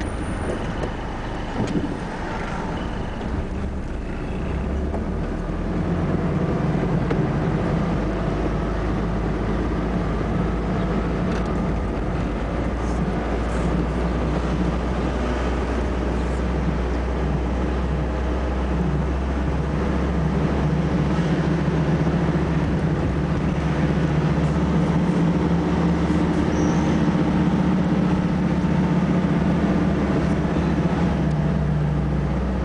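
Engine and road noise of a moving car heard from inside its cabin, a steady low rumble that grows a little louder about six seconds in and again later.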